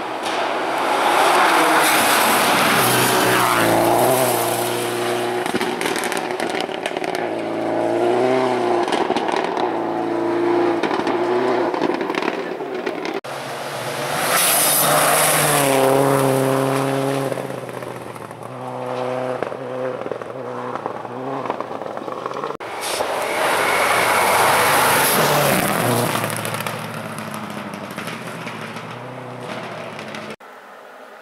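Rally cars passing at full speed on a gravel stage, one after another, three loud passes in all. Between the peaks the engines rev up and down through quick gear changes.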